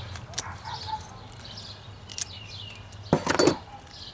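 Tin snips cutting a thin sheet of flexible stone veneer: a few small clicks and snips, then a louder crackling burst about three seconds in.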